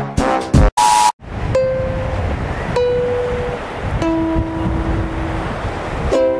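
Steady sea surf noise with three single ukulele notes plucked about a second apart and left ringing. Before it, the end of a backing music track and a short beep.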